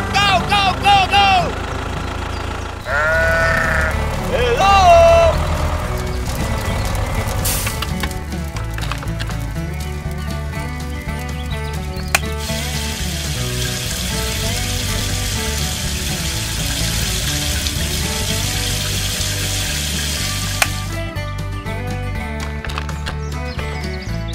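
Background music with a steady beat throughout. About twelve seconds in, a switch clicks on a toy water tanker's mini water pump, and a steady hiss of spraying runs for about eight seconds until a second click.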